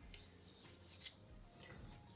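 A sharp click of a metal spoon handled against glass or the counter, then a couple of fainter clicks, over a quiet room.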